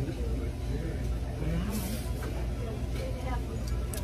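Restaurant dining-room background: a steady low rumble with indistinct voices and a short noisy sound about halfway through, while people eat.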